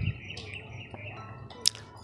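Faint short chirping tones over a quiet background, with a brief high hiss near the end.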